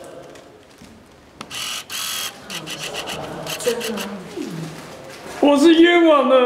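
Faint voices, a short rasping scrape about a second and a half in, then a loud, drawn-out voice near the end.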